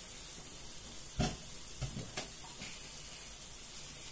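Frying pan of softened onion, peppers and tomato slices sizzling gently and steadily over low heat, with a few soft knocks about one and two seconds in.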